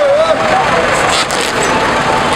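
Busy street: voices, one raised voice in the first half-second, over steady vehicle traffic noise.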